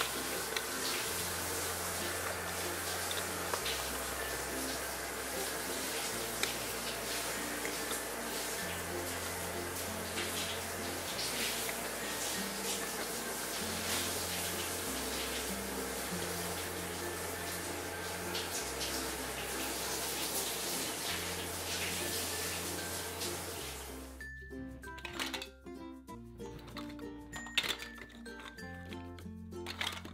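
Background music with a repeating bass line over water running from a toy kitchen sink's faucet as plastic toy fruit is rinsed. The water stops suddenly about 24 seconds in, leaving the music and light clicks of plastic pieces being handled.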